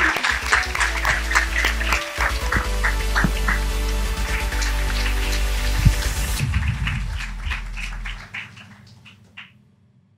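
Audience applause dying away in the first second or so, under an electronic outro jingle with a deep bass note and regular ticking beats. The jingle fades out over the last three seconds.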